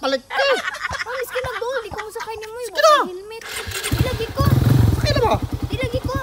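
A small motorcycle engine starts about three and a half seconds in, with a short burst of noise, then settles into a fast, even idle.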